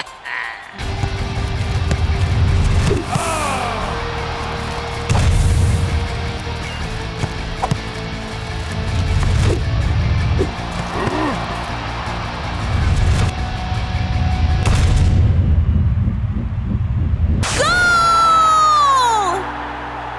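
Background music with a pulsing beat and heavy bass. Near the end a falling tone with a rich, buzzy edge sweeps down for about two seconds.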